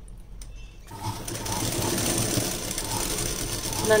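Domestic straight-stitch sewing machine starting about a second in and then running steadily, stitching a seam in blouse lining fabric.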